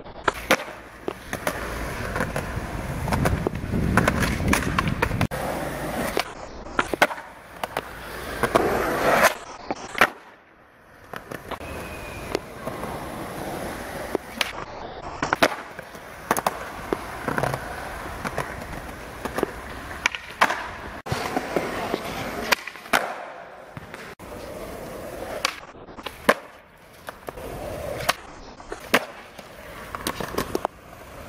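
Skateboard wheels rolling over concrete, with sharp clacks from boards popping and landing on tricks several times over. The rolling is loudest a few seconds in, and the sound breaks off sharply at several points.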